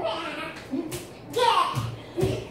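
Short high-pitched voices, a few brief bent-pitch exclamations, with one sharp tap about a second in.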